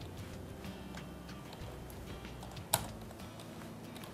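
Light keystrokes on a computer keyboard: a few faint key clicks and one sharper click nearly three seconds in, over a low steady hum.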